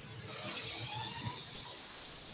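Faint background noise over a video-call line: a steady hiss with a higher band that swells about a third of a second in and then fades.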